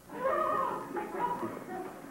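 High-pitched, wavering laughter, in broken stretches that fade near the end, a nervous fit of giggling at the sight of the beard.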